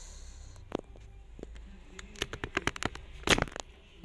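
Handling noise as a smartphone and its scope adapter are taken off an air rifle's scope: scattered plastic clicks and knocks, then a quick run of clicks and a louder short scrape near the end.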